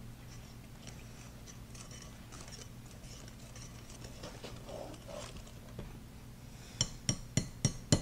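A wire whisk stirring thick chocolate brownie batter in a bowl, a faint soft swishing; near the end, a quick run of sharp clinks as the whisk wires strike the bowl.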